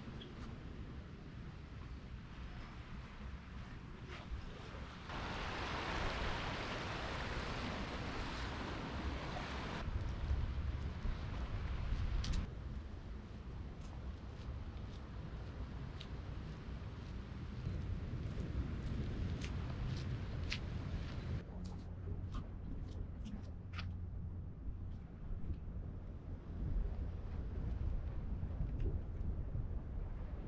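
Wind rumbling on a GoPro's microphone, with a louder hissing rush lasting about five seconds and scattered light clicks and taps later on.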